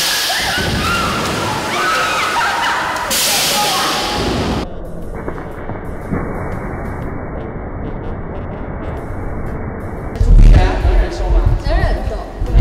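People tipping backward off seats into a swimming pool: water splashing and sloshing, with voices shouting. Heavy dull thumps on the microphone follow near the end.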